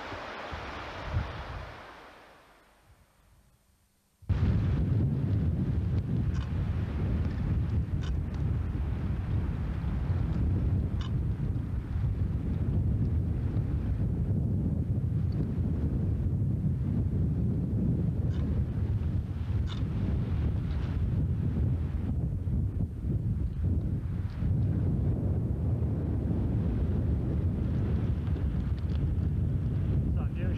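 Wind buffeting the camcorder microphone: a heavy low rumble that cuts in suddenly about four seconds in and holds steady, after a brief hiss fades away.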